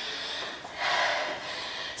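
A woman breathing hard after a burst of exercise, with one long heavy breath about a second in.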